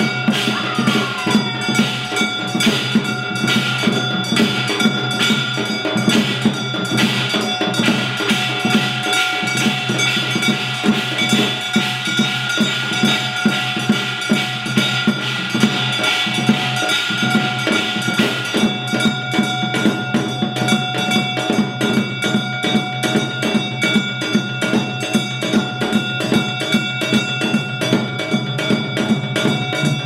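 Korean traditional music ensemble playing live: a steady, dense drum rhythm with sustained ringing tones held over it.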